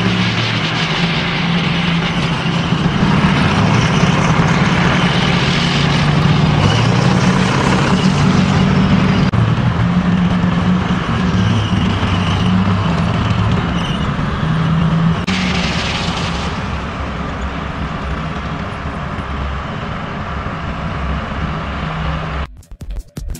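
K9 Thunder tracked self-propelled howitzer driving, its V8 diesel engine running with a low drone that shifts pitch in steps, over a steady rushing noise of the moving vehicle. There is a brief brighter rush about fifteen seconds in, and the sound eases slightly toward the end.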